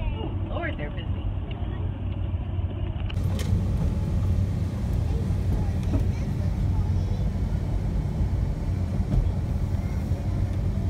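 Steady low rumble of a large passenger van's engine and road noise, heard inside the cabin while driving, with a child's voice briefly near the start.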